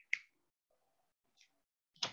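Faint, sharp clicks: one just after the start, a fainter one past the middle, and another at the end.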